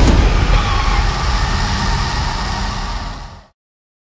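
An SUV's engine running loudly with a heavy low rumble, fading out to silence about three and a half seconds in.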